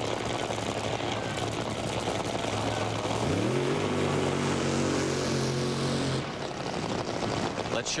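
A Top Fuel dragster's supercharged, nitromethane-burning V8 runs with a loud, rough rumble. About three seconds in it revs up sharply, holds a high steady note for about three seconds, then drops back.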